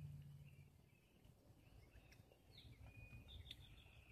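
Near silence, with faint, high, scattered bird chirps here and there and a faint low hum that stops under a second in.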